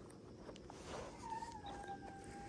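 Pomsky puppy giving a thin, high whine starting just over a second in, dipping slightly in pitch as it goes, with a few soft rustles of fur against clothing before it.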